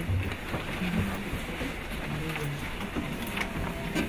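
Low murmur of voices with rustling and scattered small clicks in a room. A few faint held tones come in about three seconds in.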